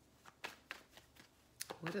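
A deck of tarot cards being shuffled by hand, with a handful of separate sharp card snaps over the first second and a half.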